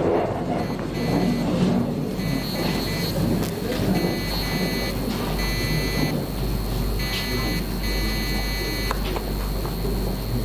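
A hall held in a moment of silence: a steady low electrical hum and shuffling room noise, with a high electronic beeping tone that sounds in short spells about five times.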